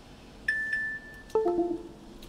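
Windows device-disconnect chime as the USB cable is pulled from a Ledger Nano S: a short high tone about half a second in, then a lower chime stepping down in pitch, the computer's signal that the USB device has gone.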